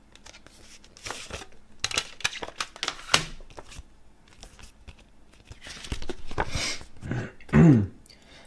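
Paper rustling and small plastic clicks as a CD booklet is pulled out of its jewel case and opened, with a brief vocal sound near the end.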